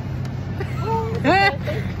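A steady low hum with a voice speaking over it in the second half, loudest about a second and a half in.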